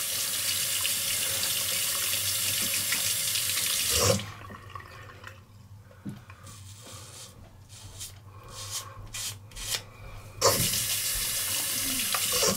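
Water running from a tap as a razor is rinsed, cut off about four seconds in. Then a run of short scraping strokes of a five-blade Gillette ProGlide Shield razor through lathered stubble, before the tap runs again near the end.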